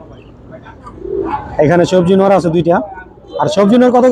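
Domestic pigeons cooing in a wire cage, mixed with men's voices close by.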